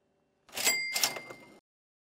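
Cash register 'ka-ching' sound effect: a mechanical clatter with two sharp clicks and a ringing bell, starting about half a second in, lasting about a second and cutting off suddenly.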